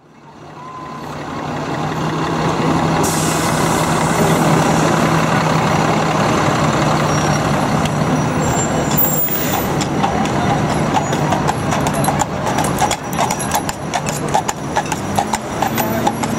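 City street traffic fading in, with a vehicle engine's steady low hum, then a carriage horse's hooves clip-clopping on the road from about nine seconds in.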